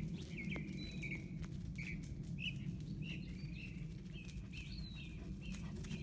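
Birds chirping in short, scattered calls over a steady low rumble from a phone being carried on the move.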